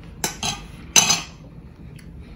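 Two sharp clinks of a metal fork against a plate, the second louder and briefly ringing.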